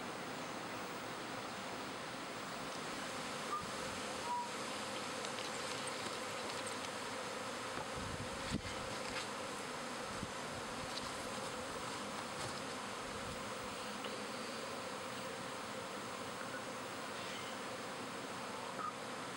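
Steady, dense buzzing of a honey bee swarm in flight, thousands of bees in the air at once, with a few faint knocks.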